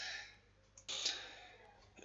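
Faint clicking of a computer mouse scroll wheel, with a short soft rush of noise about a second in.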